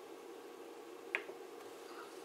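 A single sharp click about a second in, from a front-panel button being pressed on a Rigol oscilloscope to change its signal generator's waveform, over a faint steady hum.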